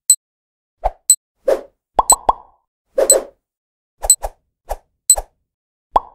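Cartoon-style sound effects for an animated number countdown: a string of short pops and plops, about one or two a second, some with a brief bright ping on top, and a quick run of three pops about two seconds in.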